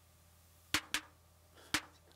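Short electronic snare hits from a Nord Drum, fired by a modular synth's trigger about once a second. The first hit, just under a second in, is followed about a fifth of a second later by a second hit: the drum is double-triggering. A single hit comes near the end.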